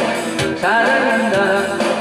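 A man singing a Korean pop ballad, accompanied by a strummed steel-string acoustic-electric guitar; his voice comes in about half a second in over held instrumental notes.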